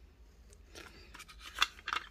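Cassette tape and its clear plastic case clicking as the tape is slipped back into the case and handled: a few light clicks, the sharpest about one and a half seconds in.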